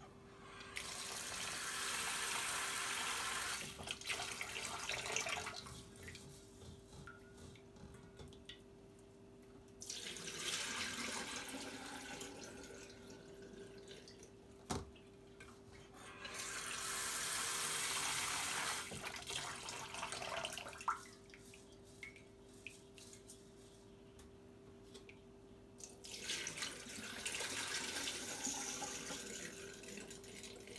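Cold water running from a kitchen tap into a stainless steel bowl of basmati rice and into the sink, in three spells of a few seconds each, as the rice is rinsed and strained. Between the spells there is quieter handling of the bowl, a single light knock about fifteen seconds in, and a faint steady hum underneath.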